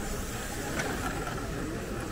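Steady outdoor promenade background noise with a low rumble, faint voices in the distance and a brief click about a second in.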